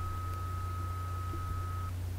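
Steady low hum with a faint, thin high-pitched whine that cuts off just before the end: the background noise of the recording, with no speech.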